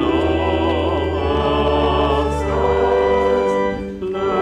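Voices singing a hymn with organ accompaniment. The sustained low organ notes stop about three and a half seconds in, and there is a short break near the end as a phrase ends.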